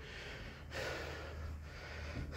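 A man breathing between sentences, with one long breath out starting under a second in.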